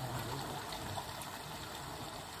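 Steady rushing of flowing river water, with a faint low hum coming and going under it.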